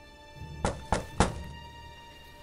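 Three quick knocks on a wooden door, about a third of a second apart, over soft background music.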